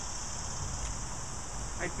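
Steady high-pitched drone of insects in the grass, with a low rumble underneath and a faint tick about a second in.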